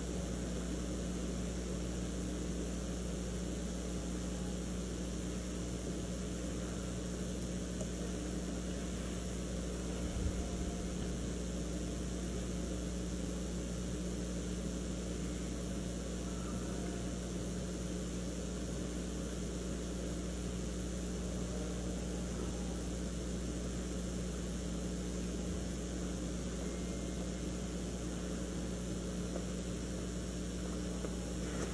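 Steady hum and hiss of a large legislative chamber's room tone held in silence, with one faint low thump about ten seconds in.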